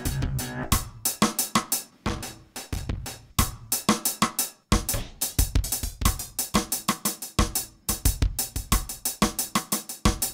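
Drum-machine beat from the DM1 iPad app played through the Tap Delay tape-style multi-tap delay, its hits repeated as echoes in a dense rhythm. The beat drops out briefly a few times as presets are switched.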